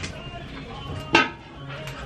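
Kitchen utensil sounds: one sharp clink of metal cutlery or dishes about a second in, over a low steady hum.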